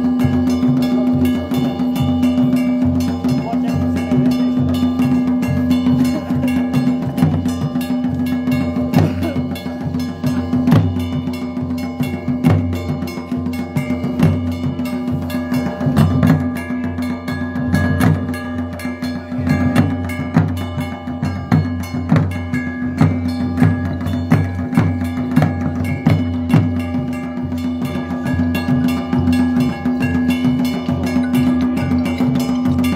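Himachali folk procession music: barrel drums beating a dense, steady rhythm under one constant held note from a wind instrument.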